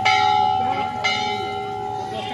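Hanging metal temple bell struck twice, at the start and again about a second in, each strike ringing on with a steady, clear tone.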